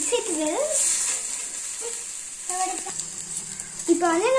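Diced carrot and beans sizzling steadily in hot oil in a steel kadai, stirred with a steel spatula.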